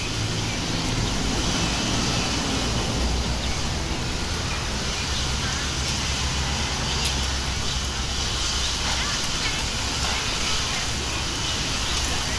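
Steady low rumble and hiss of background noise, with faint voices.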